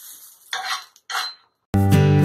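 A few short scrapes of metal kitchen utensils against cookware, about half a second apart. Acoustic guitar music then cuts in loudly near the end.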